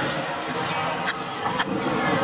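A football kicked twice during dribbling: two sharp knocks about half a second apart over steady background noise.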